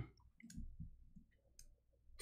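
Near silence with a few faint, short clicks scattered through it.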